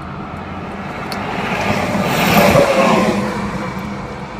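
Traffic noise heard from inside a car: a vehicle passing close by, its rush swelling to a peak a little past halfway and fading again, over a steady low hum.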